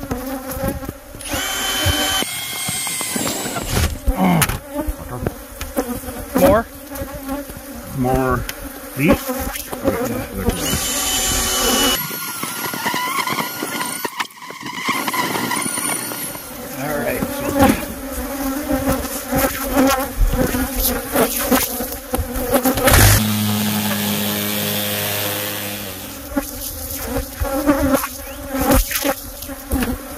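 Many Africanized honeybees (killer bees) buzzing loudly close to the microphone, with bees sweeping in and out: a defensive colony disturbed by holes drilled into its cavity. A cordless drill runs in short spells among the buzzing.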